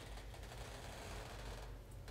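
Faint handling noise, soft rustling and a few small knocks near the end, as a large padded cushion is lifted and moved, over a steady low hum.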